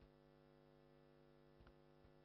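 Near silence, with only a faint steady electrical hum.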